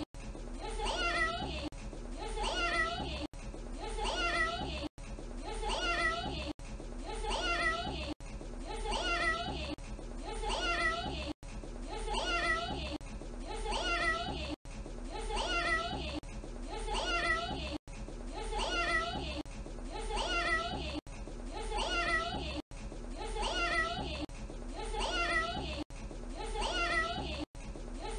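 A toddler saying "meow" in a cat-like voice. The same short clip loops about every 1.6 seconds, so the meow repeats over and over, with a brief dropout at each loop join.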